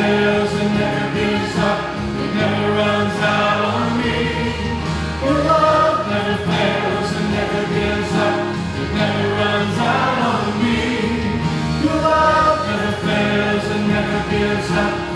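Church praise team and worship choir singing a contemporary worship chorus together with the congregation, over steady instrumental accompaniment.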